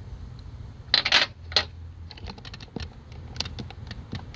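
A loud brief clatter of hard objects about a second in, then a run of irregular sharp clicks and taps, like tools and parts being handled in a car's engine bay.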